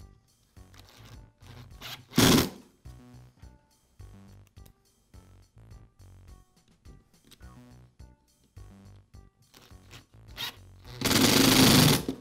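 Cordless power screwdriver running in two bursts, a short one about two seconds in and a longer one of about a second near the end, driving in the screw that holds the retainer on a string trimmer's recoil starter pulley. Soft background music with a steady beat plays throughout.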